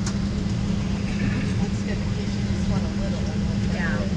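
Steady low drone of an airliner's cabin with the aircraft standing still on the ground, under a faint murmur of passengers' voices.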